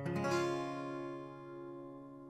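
A C chord strummed once on a steel-string acoustic guitar capoed at the first fret, left to ring and slowly fading.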